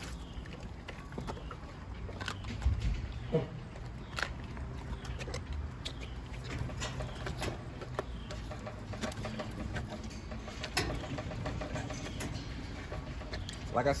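Scattered light clicks and knocks from a large dog's paws on a wire-mesh kennel gate as it stands up against it waiting for food, with a low thump about three seconds in.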